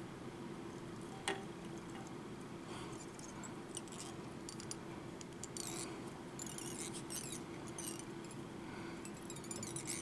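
Faint scratchy handling noises from thread being wrapped on a fly hook held in a tying vise, with a small click about a second in and more crackling in the second half, over a steady low hum.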